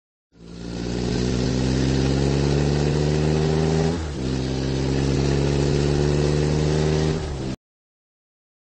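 Car engine sound effect. It fades in and runs steadily at one pitch, with a brief dip about halfway, then cuts off abruptly shortly before the end.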